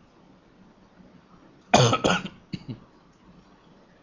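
A person coughing: two loud coughs in quick succession about a second and a half in, followed by two softer ones.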